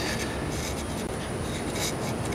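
Steady outdoor background noise, a low rumble and hiss, with no clear single event.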